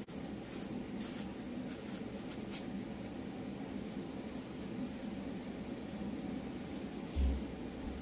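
Plastic parts of a handheld vacuum's dust container rubbing and clicking faintly as it is twisted open and handled. A few small ticks come in the first seconds, and there is a soft thump near the end.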